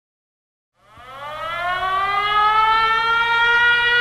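Air-raid siren sounding an alert: it starts about a second in, rises in pitch as it winds up, then holds a steady wail.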